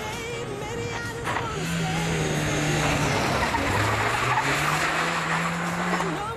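Hatchback rally car driven hard through a loose gravel course: the engine note holds, dips about four seconds in, then climbs again. A hiss of tyres and gravel builds in the second half.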